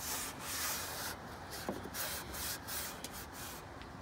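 Cloth rag wiping over the truck's engine-bay panels and trim, a run of irregular rubbing strokes.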